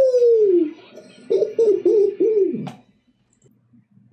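A person's voice: one long falling "ooh", then about a second later four short low hooting notes in quick succession, like a chuckle, followed by a single click.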